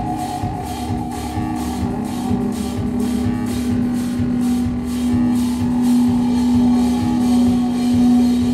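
Live band of drum kit and synthesizers playing: a steady electronic drone that grows louder over a regular drum beat.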